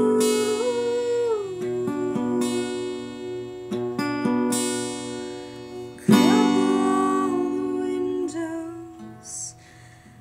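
Acoustic guitar strummed under a woman singing long held notes, with a fresh loud sung note about six seconds in; the playing thins out and quietens near the end.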